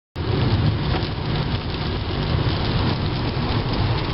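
Rain and wet-road noise inside a moving car's cabin: a steady hiss of rain and tyre spray over a low rumble.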